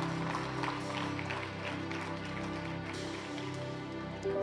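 Worship team playing soft music with sustained chords held steadily, fading slightly.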